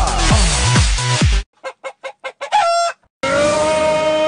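Electronic dance music cuts off about a second and a half in. About six short pitched calls follow in quick succession, then one longer call. A different piece of music then begins with a steady held note.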